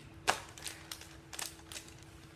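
A metal fork clicking and scraping against a plastic clamshell container as it digs into a hard banana bread, a series of short sharp clicks with the loudest about a quarter second in.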